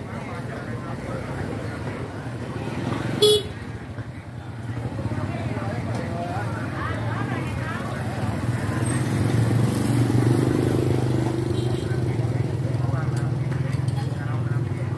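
Busy outdoor market street: voices chattering throughout, a vehicle horn beeping once, short and loud, about three seconds in, then motorbike engines running past with a low hum that grows louder in the second half.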